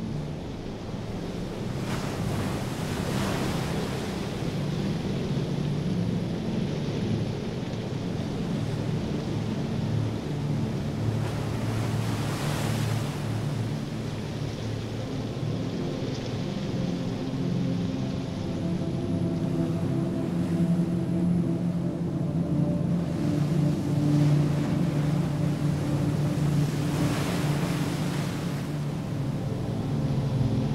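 Produced airship ambience: a steady low rumbling drone with wind rushing over it, swelling into three gusts, with a faint steady hum coming in over the second half.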